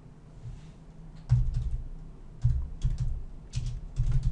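Typing on a computer keyboard: quiet for about a second, then quick runs of several keystrokes each.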